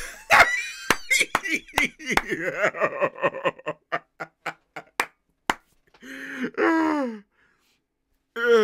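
A man laughing hard, broken by a run of sharp slaps over the first five seconds, then a longer drawn-out laugh with a falling pitch near the end.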